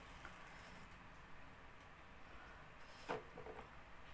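Quiet room tone with one short knock about three seconds in, a drink can being picked up off the table, followed by a brief fainter sound.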